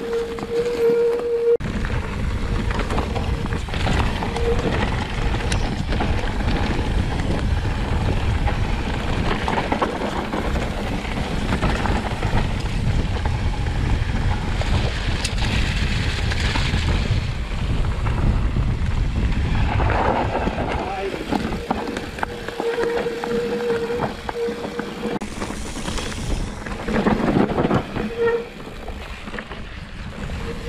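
Mountain bike ride heard from an action camera: constant wind buffeting the microphone over the rumble of tyres on a dirt trail. Scattered knocks and rattles come from the bike going over the rough ground.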